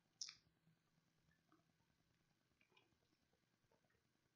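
Near silence, with one short click about a quarter second in and a few faint ticks afterwards.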